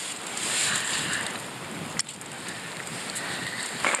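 Wind blowing on the microphone: a steady rushing noise with a single sharp click about halfway through.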